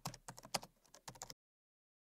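Faint computer-keyboard typing: a quick, irregular run of light key clicks that stops dead about a second and a half in.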